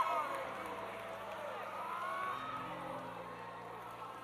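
Congregation of many voices praying and calling out at once in worship, scattered and overlapping, over a low steady held hum.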